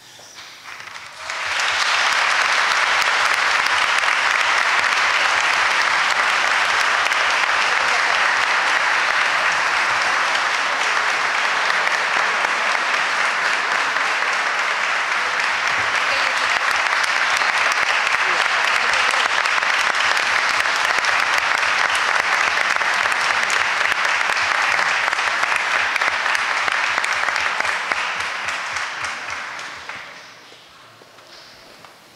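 Audience and council members applauding, starting about a second and a half in, holding steady, then dying away near the end.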